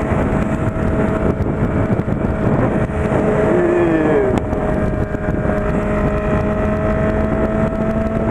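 Honda CB600F Hornet's inline-four engine running at a steady pitch while cruising at motorway speed, mixed with heavy wind rush over the microphone.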